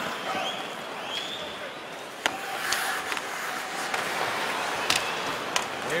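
Ice hockey arena crowd noise during play, with a few sharp clacks from play on the ice. The loudest clack comes about two seconds in and two more come near the end.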